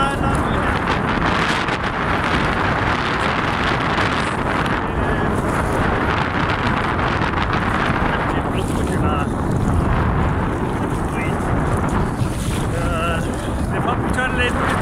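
Steady wind buffeting the phone's microphone, with sea water sloshing around a person wading through the shallows.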